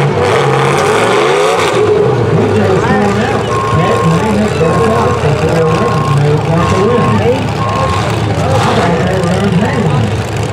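Engines of a demolition derby car and heavy equipment running on the track. A back-up alarm on the heavy equipment beeps about five times in the middle, evenly spaced.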